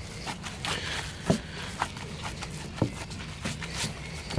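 Gloved hands kneading raw ground beef and diced onion in a wooden bowl: soft squelches of the meat being pressed, with the rustle of disposable gloves. The sounds come as about five short, separate squishes spread over a few seconds.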